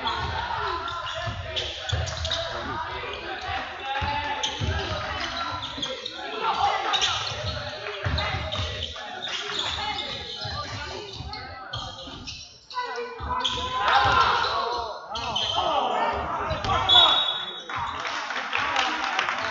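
A basketball being dribbled on a hardwood gym floor, a thud every so often, under players' and coaches' shouts echoing in a large sports hall. A brief high squeal comes near the end.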